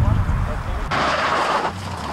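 Rally car engine running with a strong low rumble, cut off abruptly about a second in by a hissing rush of noise from another rally car passing.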